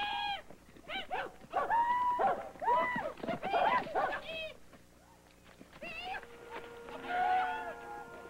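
A run of high calls and cries that rise and fall, several in quick succession. About six seconds in, music with long held notes comes in.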